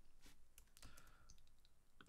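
A few faint, scattered clicks from a computer keyboard and mouse, against near-silent room tone.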